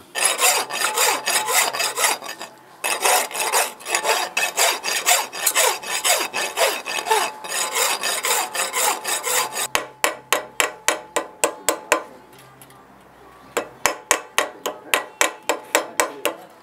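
A hand saw is stroked rapidly back and forth across a steel spur shank, cutting the grooves for a wire inlay, with a short break about three seconds in. About ten seconds in, this gives way to quick light metal-on-metal hammer taps, about four a second, in two runs with a pause between, setting the inlay wire into the grooves.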